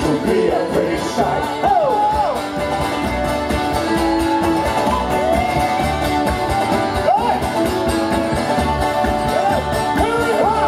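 Live acoustic folk band playing a lively instrumental passage, with strummed acoustic guitar, a squeezebox and a mandolin, and voices rising and falling over the music.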